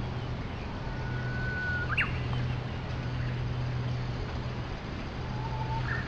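Steady background hiss with a low hum, and a few short bird-like chirps and whistles over it. The clearest is a quick rising chirp about two seconds in.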